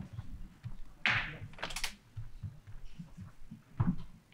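Faint handling noise at a lectern microphone: scattered soft low thumps, a short airy rustle about a second in followed by a brief crackle of clicks, and a firmer thump near the end.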